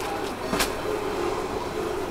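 Steady low background hum with a single brief rustle about half a second in, as a shirt is pulled from a stacked shelf of clothing.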